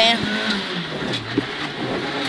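Renault Clio Williams rally car's four-cylinder engine heard from inside the cabin, its revs falling about a second in and then holding low.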